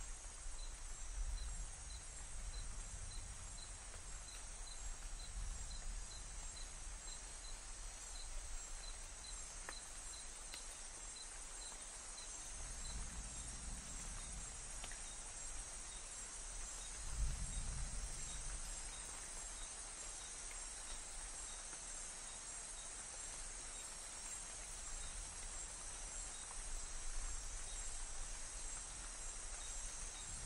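Amazon rainforest night ambience: a steady chorus of insects, with one chirping about twice a second. Distant thunder rumbles twice, about thirteen and seventeen seconds in, the second louder.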